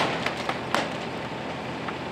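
Bricks being knocked loose from a fire-damaged brick facade: a sharp knock at the start and two lighter knocks within the first second, over a steady low hum.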